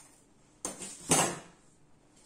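A steel ruler clattering as it is handled and set down: two short metallic clatters about half a second apart, the second louder.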